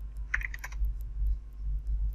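Typing on a computer keyboard: a run of quick key clicks, with a louder cluster of keystrokes about half a second in, over a steady low hum.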